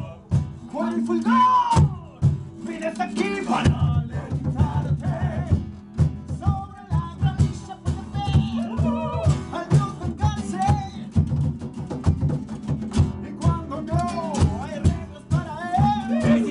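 Two acoustic guitars strummed in a fast, steady rhythm, with voices singing over them.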